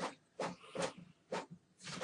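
Desktop printer printing a page: a regular series of short mechanical clicks and swishes, about two a second, as the sheet feeds through.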